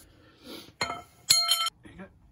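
Steel tools clinking at the lower strut bolt: a light click, then a sharp clink that rings briefly about a second and a half in, from the breaker bar and its pipe extension on the socket.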